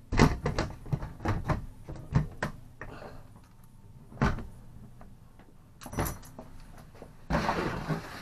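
Plastic storage bin and its lid knocking and clicking as they are handled: a quick run of knocks and clicks in the first couple of seconds, single knocks about four and six seconds in, and a scraping rustle near the end.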